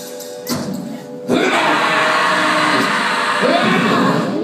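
Live band music on stage. A short sharp hit comes about half a second in, then the sound jumps suddenly louder about a second and a half in and holds at that level.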